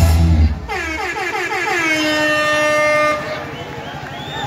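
Live rock band ending a song. A heavy final low note cuts off about half a second in, and then one held note slides down, settles and rings on for about two and a half seconds before fading.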